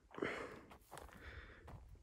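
A quiet lull with only faint, even background noise and no distinct sound event.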